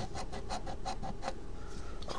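A coin scraping the coating off a paper scratch-off lottery ticket in quick, even strokes, about eight a second, stopping after just over a second.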